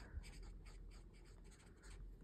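Faint scratching of a pen writing on lined notebook paper, in short irregular strokes.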